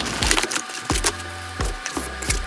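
Cardboard box flaps and packing material being handled as shipping boxes are unpacked: irregular crackling, crinkling and rustling with scattered sharp clicks.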